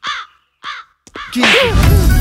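A bird giving two short calls in quick succession, then soundtrack music comes in with a deep boom near the end.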